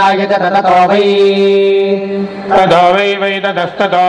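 Male voices chanting Sanskrit Vedic verses in traditional recitation (Veda parayanam). About a second in, one syllable is held on a steady note for over a second, then the quick syllable-by-syllable recitation picks up again.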